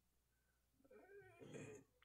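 Near silence, with a faint, brief pitched cry or voice-like sound, its pitch bending, starting about a second in and lasting under a second.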